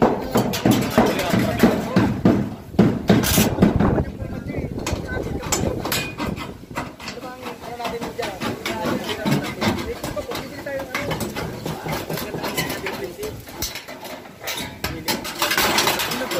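Tin snips cutting sheet-metal ridge cap with many short sharp clicks, under people talking, loudest in the first few seconds.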